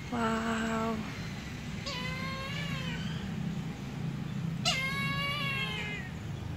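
Three drawn-out, meow-like calls from the aviary birds, about two seconds apart, each higher-pitched than the last, the last one falling slightly, over a steady low hum.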